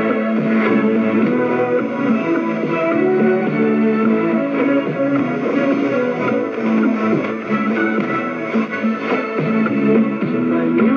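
Guitar-led music from a shortwave broadcast, played through a Tecsun PL-660 portable radio's speaker. It plays at a steady level with a dulled top end.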